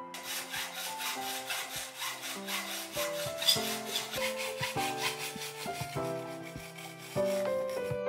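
Hacksaw cutting through a laminated bow blank wrapped in fabric, in quick, even back-and-forth strokes.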